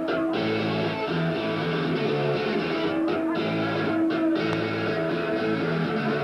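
Amplified electric guitar playing a repeating chord riff as a rock song begins, heard live in the room, with short breaks in the riff about three and four seconds in.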